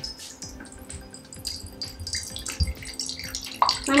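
Water running from a filter pitcher's spout into a glass cup, with a soft knock about two and a half seconds in.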